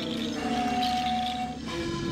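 Traditional flutes played by a group of dancers, holding long steady notes. A higher note is held through the middle and stops, and lower notes come in near the end.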